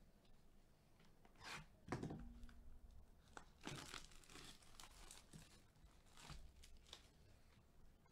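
Plastic wrapping being torn and crinkled off a sealed trading-card hobby box by gloved hands, in a handful of short, quiet bursts. The loudest comes about two seconds in, with a soft bump as the box is handled.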